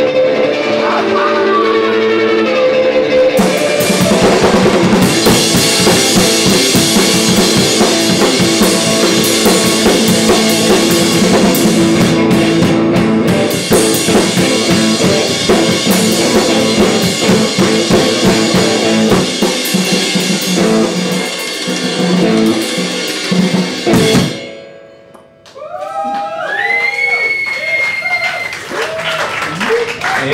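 Live drums-and-guitar band: held guitar notes for a few seconds, then a full drum kit comes in with dense cymbals under the guitar for about twenty seconds. The music stops abruptly, and after a short lull a few wavering, sliding notes follow.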